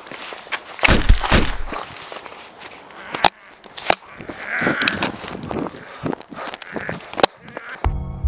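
Rustling footsteps and handling noise from someone running through long grass, with scattered sharp knocks and rumbling low thuds, and a drawn-out voice about halfway through.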